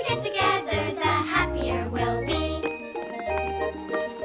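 Children's sing-along music: voices singing over a bass line for the first two and a half seconds or so, then an instrumental passage with bright chiming, bell-like notes.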